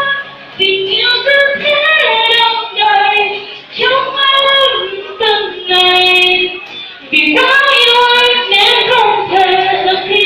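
A woman sings a slow song into a microphone in held, sustained phrases, accompanied by an acoustic guitar.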